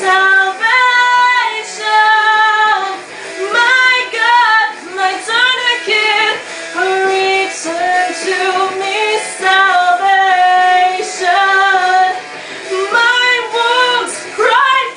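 A young woman's solo singing voice in long held notes that slide up and down between pitches, in phrases broken by short breaths.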